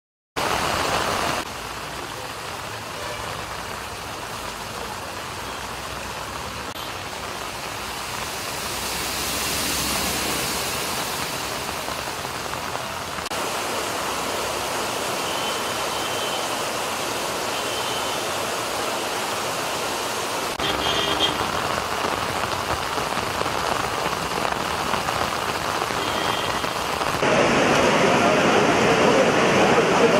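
Heavy rain falling with floodwater running across a road: a steady, even hiss that jumps in level at a few cuts and is loudest near the end.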